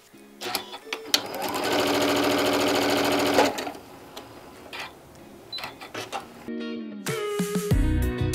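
Computerized sewing machine stitching a quilt seam at speed for about two seconds, then stopping. Background music comes in near the end.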